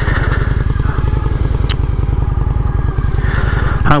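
Honda Shadow ACE 750's V-twin engine idling with a steady low, even beat. A light click comes a little before the middle.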